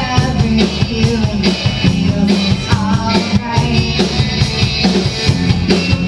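Live rock band playing loudly through the bar's PA: drum kit keeping a steady beat under electric guitars, with a woman singing lead.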